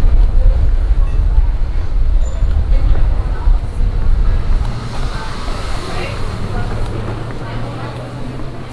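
Loud low rumble of outdoor street noise, strongest for the first few seconds and easing off after about five seconds, when a low steady hum comes in, with voices of passers-by in the background.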